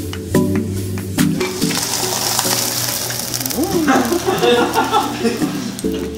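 Chicken hearts sizzling as they fry in coconut oil in a pan; the sizzle swells about two seconds in. Background music plays alongside.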